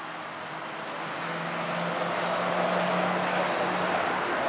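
A car driving past on the street, its tyre and engine noise growing steadily louder, with a steady low engine hum in the middle.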